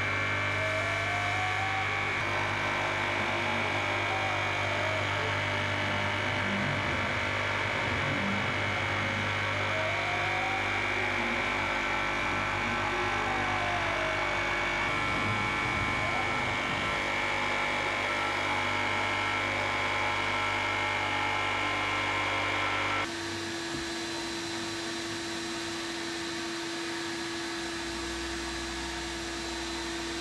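Wintech oscillating-blade foam profiler running steadily as it spiral-peels a foam block: a steady machine whine with a high tone and a low hum, and a motor tone rising and falling a few times. About two-thirds of the way through, the sound drops abruptly to a quieter steady hum with a lower tone.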